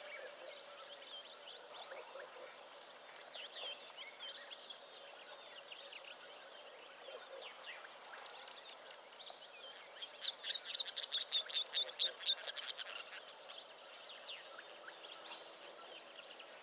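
Wild birds calling in the bush: scattered high chirps and whistles throughout, over a steady high insect whine. About ten seconds in comes a loud, quick run of repeated high chirps, about four a second, lasting two to three seconds.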